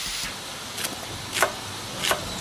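Fish frying in hot oil with a steady sizzle, then two sharp knife strokes on a cutting board about half a second apart as a chef's knife slices through shallots.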